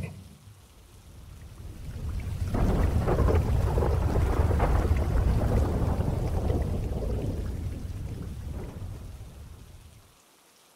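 A long roll of thunder over rain: the low rumble builds in the first couple of seconds, stays strong for a few seconds, then slowly dies away.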